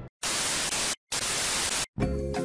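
Two bursts of TV-style static hiss, each under a second long, starting and stopping abruptly with short silent gaps around them.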